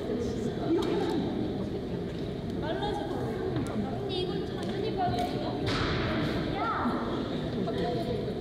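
Speech only: several people talking and calling out to each other in Korean.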